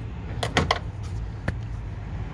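One-touch spring-loaded door stop being pushed down into its floor position: a quick run of clicks about half a second in, then one sharp click near the middle. A steady low hum runs underneath.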